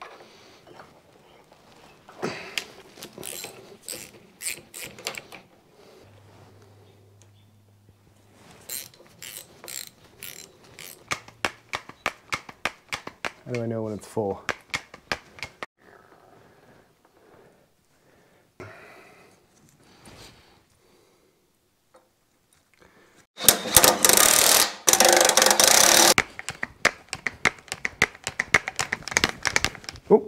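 Hand work on a Caterpillar D4 dozer blade's fittings: scattered bursts of small metal clicks and clanks from tools and parts. A loud rushing noise lasts about two and a half seconds, and more rapid clicking follows near the end as a grease gun is worked on a fitting.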